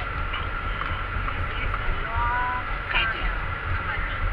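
Steady low rumble of a car's engine and tyres heard from inside the cabin while driving through a long road tunnel.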